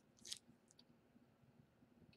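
A faint, short crunch as teeth bite into a Snickers candy bar, a moment after the start, followed by a few faint chewing clicks.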